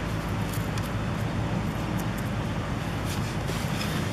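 A distant lawn mower engine running steadily, a constant low hum, with a few faint rustles of soil being spread by hand.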